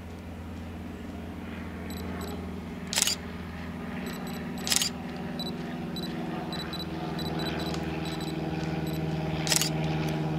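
Single-lens reflex camera shutter fired three times, about 3 s, 5 s and 9.5 s in. Faint short beeps repeat from about two seconds in. Behind them a low engine drone grows steadily louder.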